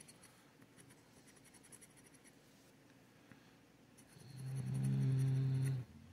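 Faint scratching of a coin on a paper scratch-off lottery ticket's coating. About four seconds in, a man gives a steady low 'mmm' hum for nearly two seconds, the loudest sound here.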